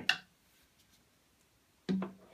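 Near silence: room tone, after a brief sharp sound at the very start.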